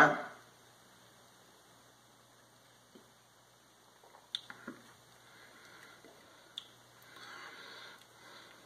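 Mostly quiet room with a man sipping a sample of young apple braggot from a glass hydrometer test jar: a few faint clicks and small mouth sounds a little past the middle, and a soft breathy sound near the end as he tastes it.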